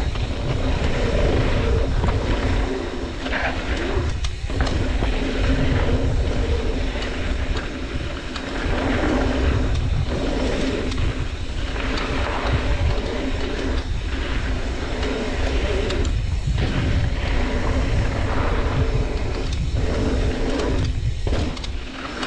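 Trek Slash mountain bike riding fast down a dirt flow trail: steady wind rush on the camera microphone and tyre rumble over dirt, with frequent short rattles of the bike over bumps and a few brief lulls.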